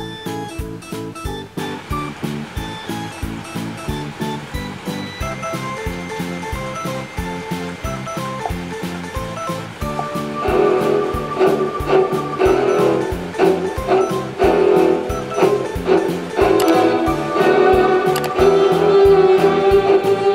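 Background music with a steady beat, growing fuller and louder about ten seconds in.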